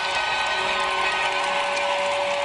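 A TV football programme's title sting: stadium crowd cheering as a steady din, with a few long held music notes over it.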